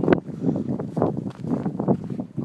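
Footsteps scuffing and crunching on a rocky trail during a descent on foot, about two steps a second and uneven.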